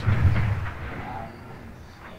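Explosion sound effect from a TV soundtrack: a sudden low boom that rumbles and fades away over about a second and a half.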